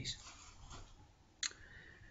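A pause in a man's talk: the end of his voice fades away, then a single short click about one and a half seconds in, with quiet room tone around it.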